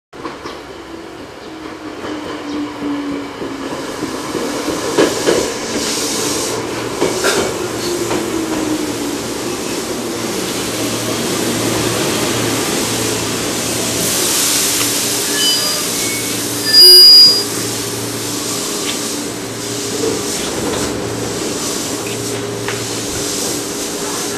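JR East 205 series electric train pulling in and stopping at a platform: a few wheel clicks and a whine that falls in pitch as it slows, then a steady low hum while it stands. A brief loud burst stands out about two-thirds of the way through.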